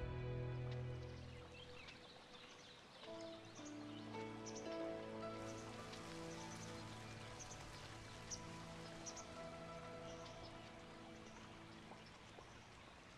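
Soft drama-score music: one piece fades out in the first two seconds, then a new gentle piece of slow held notes begins about three seconds in. Short high chirps like birdsong and a faint hiss like running water sit under it.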